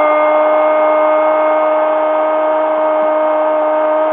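Radio football commentator's long, drawn-out shout of "gol", held on one steady note throughout over a noisy background of stadium crowd, heard through a radio broadcast's narrow sound.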